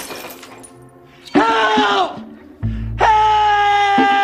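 The tail of breaking glass fades out, then a man gives a short anguished cry that falls off. About three seconds in he starts a long, sustained scream.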